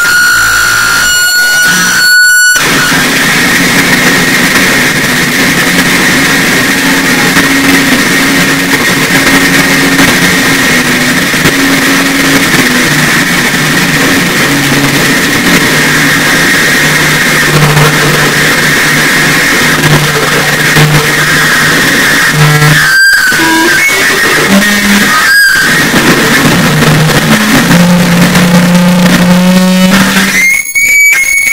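Harsh noise music from live electronics: a loud, dense wall of distorted noise with shifting low drones underneath and a steady high whine above. It is cut by brief, sudden dropouts twice in the first few seconds and twice more near the end.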